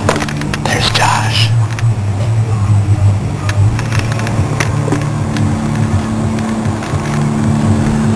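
Muffled music with a deep, shifting bass line, played through a car stereo, with low whispering over it.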